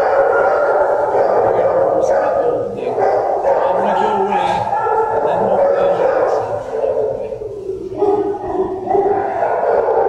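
Many kennelled shelter dogs barking and howling at once, a continuous loud din of overlapping voices that eases briefly past the middle.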